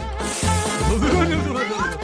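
Upbeat background music with a steady, repeating bass beat, with a brief whoosh near the start.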